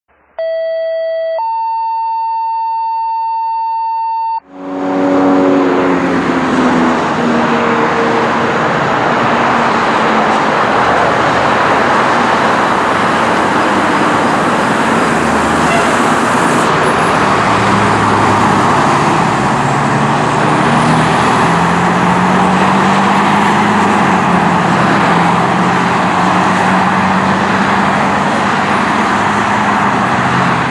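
A steady electronic intro tone for the first four seconds, then a 2000 Pierce Saber fire engine responding, loud and continuous, with its siren sounding over the engine noise.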